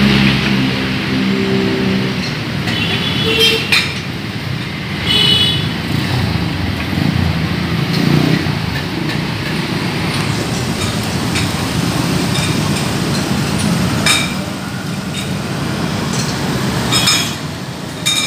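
Busy city street traffic: a steady rush of passing cars and motorcycles, with a few brief high-pitched clinks now and then.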